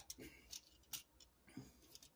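A few faint, scattered clicks of small plastic action-figure parts being handled and shifted, in near silence.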